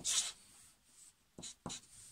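Felt-tip marker writing on paper: a short scratchy stroke right at the start, the loudest, then a few fainter, shorter strokes about a second and a half in.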